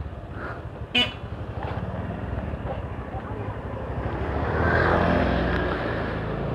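Motorcycle engine running at low speed while riding, growing louder from about four seconds in as it speeds up. A brief sharp sound about a second in.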